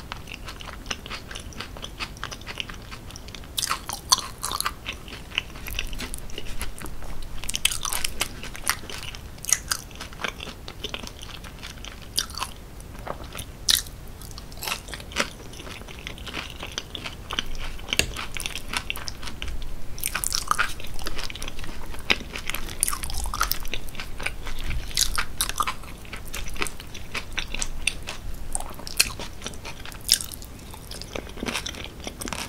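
Close-miked chewing of cheese-sauce-covered loaded fries, with frequent small clicks of the mouth and food.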